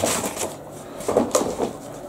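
A postal package being handled and opened, with a few short knocks and scrapes.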